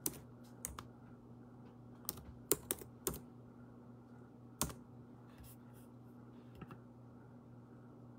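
Computer keyboard being typed on in short, irregular keystrokes, most of them in the first five seconds and only a few after, over a faint low steady hum.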